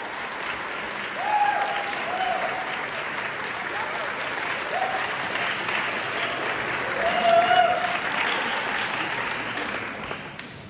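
Audience applauding steadily for an award, with a few short voices calling out from the crowd.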